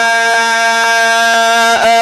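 A male Quran reciter's voice holding one long, steady note on the vowel of "yā", a prolonged madd in melodic tajweed recitation, through a microphone and loudspeaker. The note breaks off near the end as he moves on to the next word. Faint light clicks sound about twice a second under it.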